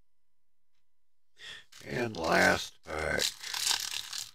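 Near silence for about a second and a half, then a man's voice: mumbled, wordless vocal sounds and sighs that the speech recogniser did not take as words.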